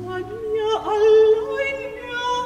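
A soprano singing a Baroque vocal line with vibrato; about a second in her pitch drops sharply and springs back up. The low sustained continuo note underneath stops just after the start, leaving the voice nearly alone.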